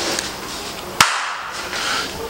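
A single sharp click about halfway through, over a low background hiss.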